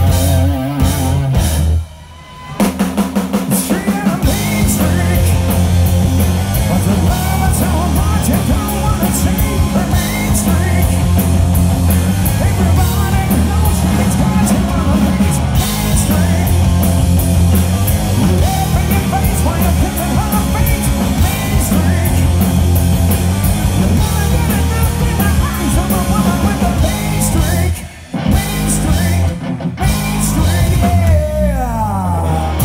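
A live rock band plays electric guitars, bass and drum kit at full volume. The band stops together briefly twice, about two seconds in and near the end, then comes straight back in.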